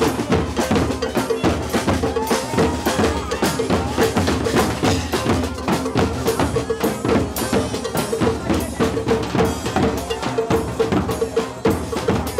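Street band playing a fast, steady beat: a bass drum with a mounted cymbal and snare drums drive the rhythm. Clarinet and sousaphone play along, and a pitched note repeats in time with the drums.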